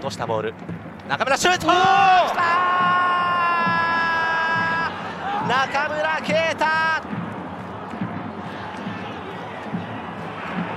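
Football broadcast commentator's excited shout for a goal, with one long call held for about two and a half seconds, then more short shouts, over stadium crowd noise.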